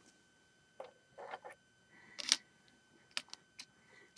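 Small plastic Lego pieces being handled and lifted off a plate: a few faint, scattered clicks and knocks, the loudest about halfway through.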